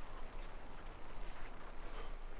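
Footsteps over a forest floor of leaf litter and needles, uneven and irregular. A small bird's high chirp sounds briefly right at the start.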